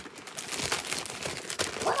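Packaging crinkling and tearing in quick, irregular rustles as a package is ripped open fast.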